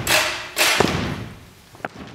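Two heavy thuds about half a second apart, ringing on in a large hall, then a light tap near the end: a big stage cast stamping together on the stage floor.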